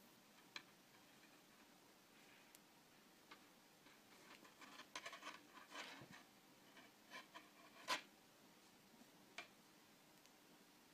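Near silence with faint, scattered clicks and rustles of beaded wire petals and wire being handled and fitted onto a stem, the sharpest click about eight seconds in.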